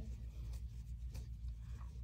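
Soft scratching and a few faint ticks of a crochet hook drawing macramé cord through stitches, over a steady low hum.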